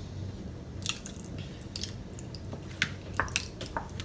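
Plastic squeeze bottle of ketchup being squeezed, giving several short wet squirts and sputters spread over a few seconds.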